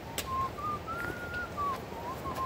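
A person whistling a slow tune, one clear note held and wavering, then stepping up to a higher held note and back down. A single sharp click sounds about a fifth of a second in.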